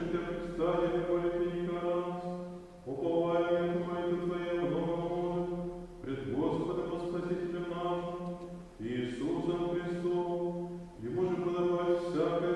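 Orthodox liturgical chant: a melody sung in long held phrases of about three seconds each, over a steady low drone, with brief breaks between the phrases.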